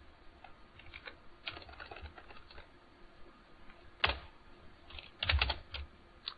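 Computer keyboard typing: light scattered keystrokes in the first couple of seconds, one sharp key press about four seconds in, then a quick run of louder strokes near the end.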